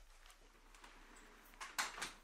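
Quiet small room with a few faint clicks and knocks near the end as a bathroom door is pushed open.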